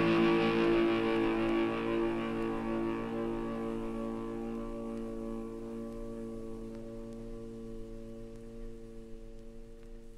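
A held chord of shoegaze-style band music, with steady sustained tones slowly fading away.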